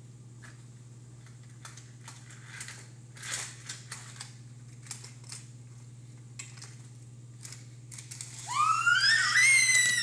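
Light clicks and clacks of plastic toy track pieces being handled on a table over a steady low hum. Near the end comes a loud, high-pitched squeal from a toddler that rises in pitch and lasts about a second and a half.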